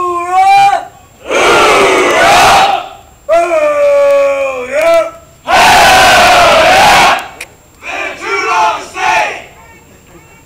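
A platoon of Navy sailors in formation doing a call and response: a single voice sings out a long, drawn-out shouted call and the whole group shouts back in unison, twice. Near the end come a few shorter shouted calls.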